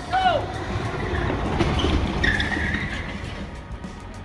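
A car running in the street, heard as a steady rumble, after a short rising-and-falling call at the start; a brief wavering high tone sounds in the middle.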